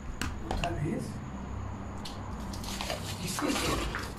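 Faint, muffled voices in snatches over a steady low hum.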